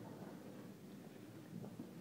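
Quiet room tone, with a few faint soft sounds about one and a half seconds in.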